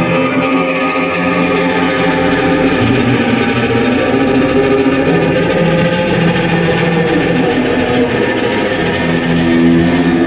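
Live rock band playing, led by an electric guitar through distortion and effects, with bass guitar underneath.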